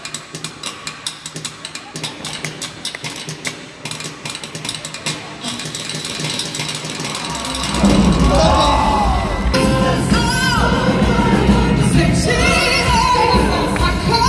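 Live band music in a large hall: for the first half, a quieter stretch full of sharp percussive hits with some crowd noise, then about halfway through the full band comes in much louder, with heavy bass and a singing voice.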